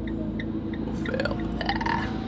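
A van's engine running steadily, heard from inside the cabin, with a light ticking about three times a second throughout. A brief rising sound comes in the second half.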